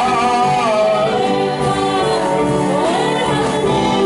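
Gospel worship music: voices singing a slow melody that glides up and down, over steady held accompaniment.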